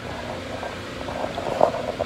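Steady background hum and hiss of a large store's ventilation.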